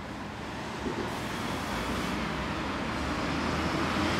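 Street traffic: a motor vehicle's engine and tyre noise, growing steadily louder as it draws nearer.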